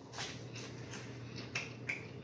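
A mouthful of popcorn being chewed close to the microphone: about five faint, crisp crunches spread over two seconds.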